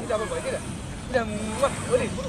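Speech: a voice talking in short phrases over a steady low background rumble.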